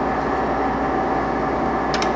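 Ganesh GT-3480 hollow spindle engine lathe running steadily in its high spindle range, with the carriage moving under longitudinal power feed: a steady gear whine over a low motor hum. A short click comes near the end.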